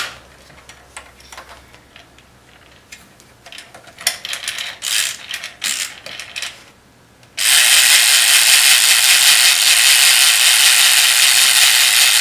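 Plastic handling clicks as Mr. Pop's head is pushed down into the tub and the timer button is pressed and turned. About seven seconds in, the game's mechanical timer is released and runs with a loud, fast, steady ratcheting clatter, counting down toward the moment the head pops up.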